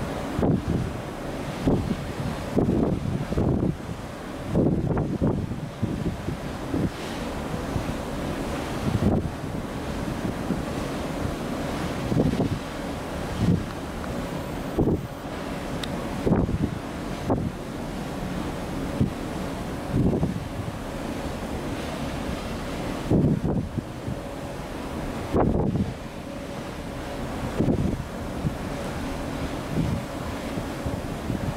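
Wind buffeting the camera microphone in irregular gusts every second or two, over a steady low rumble.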